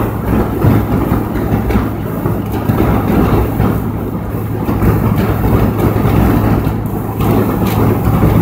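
Steady road noise inside a car driving fast on a highway: a constant low engine and tyre drone with wind rushing in through the open side windows.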